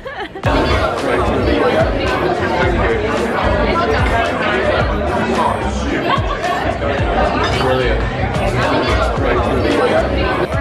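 Many diners talking over one another in a busy restaurant dining room, with background music.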